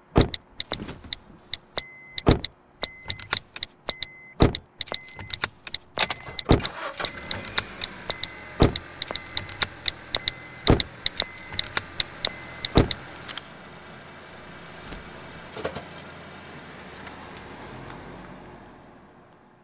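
Rapid clicking of a smartphone's touchscreen keyboard as a text is typed, with a deep thump about every two seconds. From about five seconds in, the steady rush of a car on the road builds beneath it. The clicks stop after about thirteen seconds, and the road rush carries on, fading at the end.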